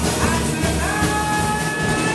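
A live rock band playing: electric guitar, bass and drum kit, with long held melody notes, one sliding up about half a second in.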